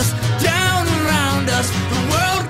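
A man singing long, sliding held notes without clear words over an acoustic band backing with a steady low bass note.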